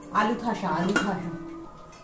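Metal cooking utensils and steel pots clattering on a gas stove, with a sharp clank about a second in.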